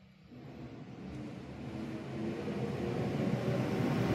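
Garbage truck engine heard through an open window, growing steadily louder.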